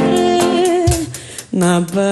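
A woman's voice singing a samba over acoustic guitar: a long held note with vibrato fades out about a second in, and after a short lull a new sung phrase begins, with guitar plucks under it.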